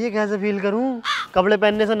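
A man's voice in drawn-out, whining wails with bending pitch, broken by a short pause about a second in.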